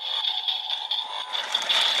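Bandai DX Evol Driver toy belt's handle being cranked: a dense plastic ratcheting rattle, thickening toward the end, over the belt's steady electronic standby sound from its small speaker, the lead-up to its transformation call.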